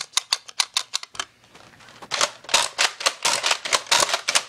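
Rapid run of sharp plastic clicks from a Nerf foam-dart blaster being worked, about seven a second. They fall away briefly about a second in, then start again louder.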